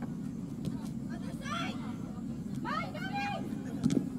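Footballers shouting calls to each other on the pitch, two short shouts, over a steady low hum, with one sharp knock just before the end.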